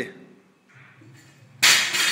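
Loaded barbell dropped onto a rubber gym floor about one and a half seconds in: a single loud, sharp clang with the metal bar and plates ringing briefly as it fades.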